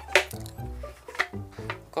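Background music, a melody of short stepping notes, with a couple of sharp clicks over it.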